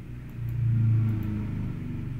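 A low engine rumble that swells about half a second in, with a slight rise in pitch, then eases off.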